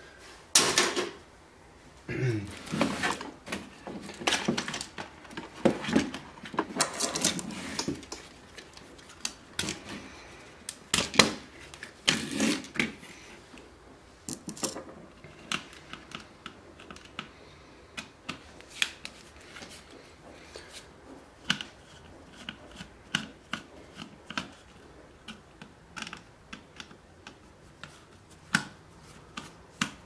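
Hands taking apart a small radio's plastic housing and circuit board: irregular plastic clicks, knocks and clatter. The clatter is denser and louder in the first half. After that come sparse light clicks of a screwdriver working screws out of the circuit board.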